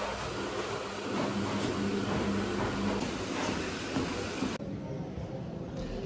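Treadmill running: a steady motor hum under the noise of the moving belt. The sound turns duller about four and a half seconds in.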